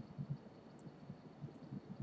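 Quiet room tone with a few faint, soft computer mouse clicks.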